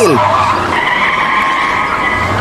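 Cartoon car sound effect of tyres squealing in a long steady screech over a low engine hum. The screech starts about half a second in.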